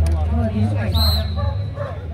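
A German shepherd gives a single short, high-pitched bark about a second in, over crowd chatter.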